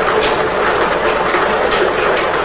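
Lottery ball draw machine running: a steady rushing noise with light scattered clicks of the balls tumbling in its clear mixing chamber.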